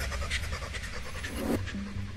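Bounce-style dance music mix passing between tracks: the clicky percussion of one track thins out and fades, and a new track's pulsing synth bass line starts about three-quarters of the way in.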